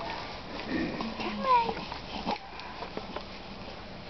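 A newborn baby's brief whimper, falling in pitch, about a second in, among soft rustling of the blanket as it is handled.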